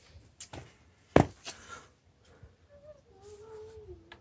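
Treated 2x4 boards knocking together on concrete as one is set down on the other, with one sharp knock about a second in. Near the end comes a faint, drawn-out, wavering call that falls slightly in pitch, like an animal's or a voice.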